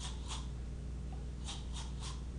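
Toothbrushes scrubbed against teeth as musical instruments, in short scratchy strokes: one near the start and a quick pair about one and a half seconds in. Each toothbrush is pitched high, medium or low.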